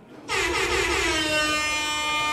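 A single long horn blast starting about a third of a second in and holding one steady note for about two seconds.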